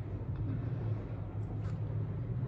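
Steady low background hum, with two faint light clicks about a second and a half in.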